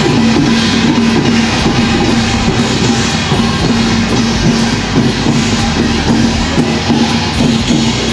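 Music with drums and a steady low held note.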